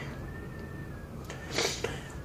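A pause in speech: low room noise with a faint, thin, steady whine for about a second, then a short breath near the end.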